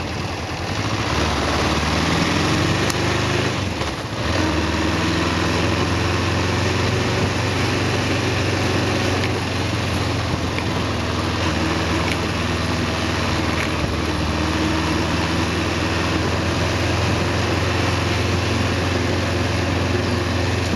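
Kawasaki EN 500 parallel-twin engine on the move, heard from the rider's seat with wind rush. Its note rises over the first few seconds, dips briefly about four seconds in, then holds steady.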